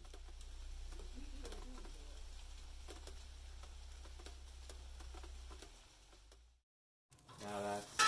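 Faint rain pattering, with scattered sharp drips over a low steady hum; it cuts off abruptly about six and a half seconds in.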